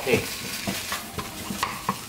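Ground pork sizzling in a hot nonstick frying pan while a wooden spatula chops and scrapes it apart, with irregular scraping strokes against the pan every few tenths of a second.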